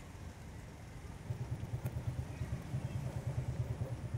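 A small motorcycle's engine running as the bike rides toward the listener, a low, evenly pulsing engine note that grows louder from about a second in.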